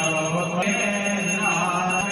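A man's voice chanting Sanskrit mantras in a Hindu puja, over a few steady high ringing tones.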